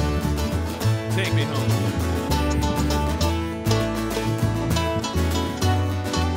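Bluegrass trio playing an instrumental break: strummed acoustic guitar over upright bass notes, with mandolin.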